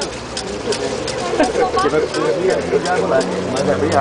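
Several people talking over one another, with a steady light ticking in the background and a low hum growing near the end.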